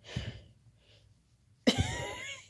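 A woman's voice without words: a soft breath just after the start, then a short quiet gap, then a sudden loud cough-like vocal burst near the end.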